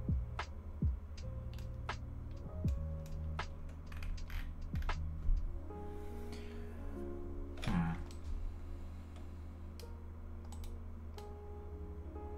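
Soft background music with long held notes, under scattered sharp clicks from a computer keyboard and mouse.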